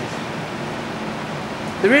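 A steady, even hiss of background noise like a fan or air handling. A man's voice starts near the end.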